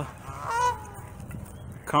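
A goose honking once, a single call about half a second in.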